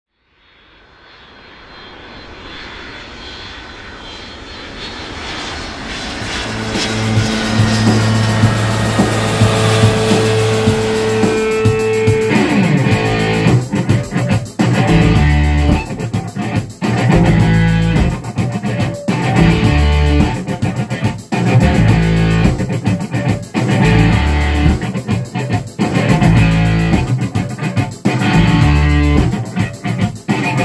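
Instrumental intro of a rock song: a swelling roar fades in over the first several seconds, followed by held low notes. About twelve seconds in, the band comes in with electric guitar and bass guitar playing a steady rhythm.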